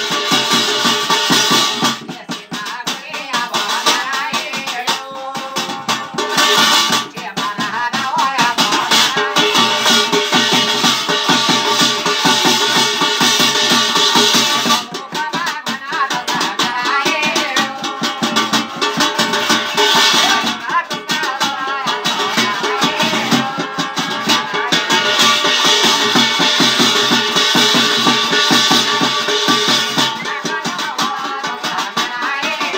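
Live Garhwali jagar folk music for an Achhari dance: a fast, steady rattling percussion beat runs throughout, with a wavering melody line that comes and goes.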